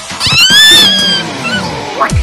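A high, cat-like yowl that rises, holds and slowly falls away over about a second, over background music.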